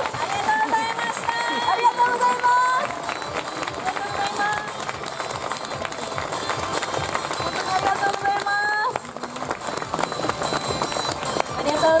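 A group of women shouting a team chant in unison, a few long drawn-out calls that each rise slightly in pitch, with the audience around them. Near the end many voices call out thanks together, overlapping.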